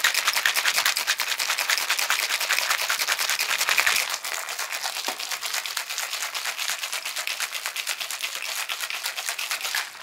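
Ice rattling hard inside a copper-coloured metal cocktail shaker shaken fast and evenly, chilling the drink and frothing the egg white. The rattle is a little softer after about four seconds.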